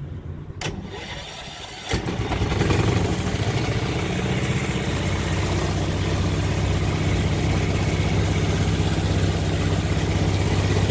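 The electric starter of a Bliss Surrey curved-dash replica car cranks its engine briefly. The engine catches about two seconds in and settles into a steady, evenly pulsing run.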